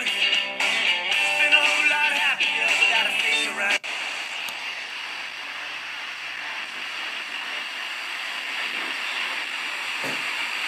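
Portable FM radio playing a station's music with singing through its small speaker. About four seconds in, a click cuts it off as it is tuned to 103.7 MHz, and the sound turns to a steady hiss of static from a weak, distorted adjacent-channel signal.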